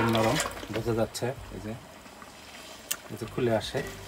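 A man's voice speaking in short phrases, with a quieter pause in the middle broken by a single sharp click.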